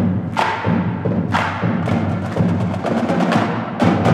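A marching band drumline of snare, tenor and bass drums plays a percussion passage. Sharp accented strikes come about once a second, then a quick run of strokes, then a louder ringing hit shortly before the end.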